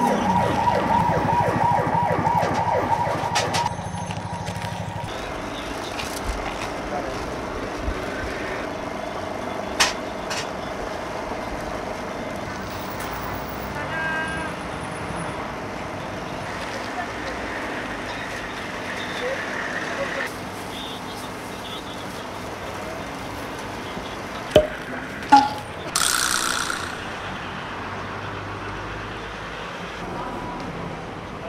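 An emergency-vehicle siren wails for the first few seconds, then stops, leaving steady street background. Under it a man chews a crunchy fried Korean hotdog, with a few sharp clicks and two sharp snaps near the end, followed by a short rustle.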